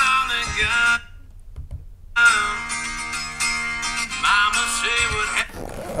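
Acoustic guitar chords strummed and left to ring. The first chord dies away about a second in; after a pause a new chord is struck a little after two seconds and rings for about three seconds.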